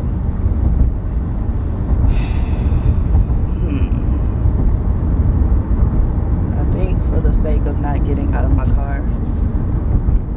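Steady low rumble of road and engine noise inside the cabin of a moving car, with a voice coming in near the end.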